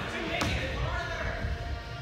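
Dull thuds of feet and bodies landing on padded gym flooring and foam blocks, with one sharp knock about half a second in, over the background chatter of children's voices.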